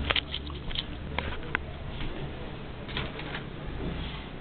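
Scattered light clicks and taps from small fishing lures being handled at the edge of a bathtub: a cluster in the first second and a half and a few more about three seconds in.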